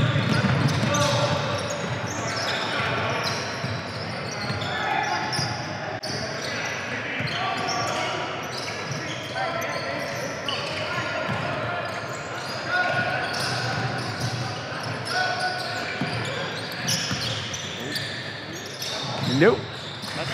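Basketball game in a large gym: a basketball bouncing on the hardwood court amid a steady chatter of players' and spectators' voices.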